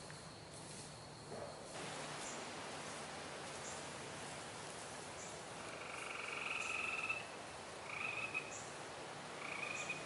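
A frog calling in short trills, three times from about six seconds in, over a steady outdoor hiss.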